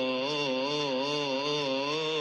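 A man chanting a selawat in Arabic, holding one long melismatic note whose pitch wavers up and down in slow ornamental turns.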